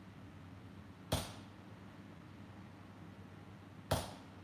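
Hammer blows on hot steel held on an anvil during axe forging: two single strikes nearly three seconds apart, each a sharp clank with a brief ring.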